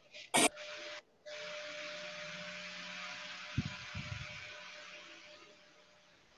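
A steady hiss with a faint steady hum, such as an open microphone's background noise on a video call, fading out over the last second or two. It starts after a short sharp sound and a brief gap near the start, and a short low sound comes about three and a half seconds in.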